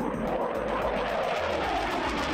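Jet noise from a NASA F/A-18's twin engines on a low-level flyover: a steady rushing sound.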